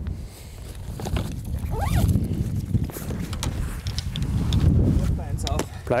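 Golfers walking with stand bags of clubs on their shoulders: a steady low rumble of wind and movement on the microphone, with a few light clicks of clubs knocking in a carried golf bag and faint voices.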